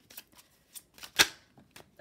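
Oracle cards from a Lenormand deck being handled as one is drawn: a few light clicks and rustles, with one sharper snap of card just after a second in.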